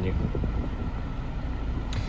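Volkswagen Sharan's 2.0 TDI four-cylinder diesel engine idling steadily, heard as a low rumble from inside the cabin.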